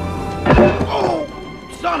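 A heavy thunk about half a second in, the loudest sound here, followed by a man's pained cry, over a film's music score.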